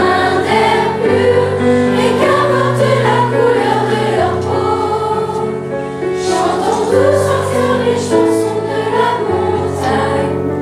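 Large youth choir of schoolchildren singing a song together over instrumental accompaniment, with held low bass notes that change every second or two beneath the voices.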